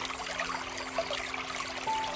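Water trickling and splashing steadily from a bamboo water fountain, with soft held notes of background music beneath it and a new higher note coming in near the end.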